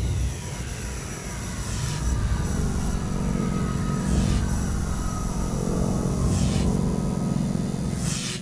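Produced intro sound design: a steady deep rumble under slowly falling sweeping tones, with a whoosh about every two seconds.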